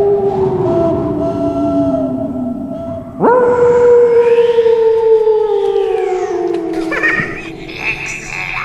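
Long wolf-like howls. The first slides slowly down and fades about three seconds in, while a second, higher howl overlaps it. A fresh howl then rises sharply and slides slowly down over about four seconds.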